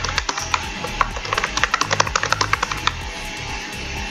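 Computer keyboard keys clicking in quick, irregular typing, stopping about three seconds in, over steady background music.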